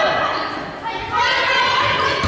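Girls' voices calling and shouting during a volleyball rally, echoing in a large gymnasium, louder about halfway through.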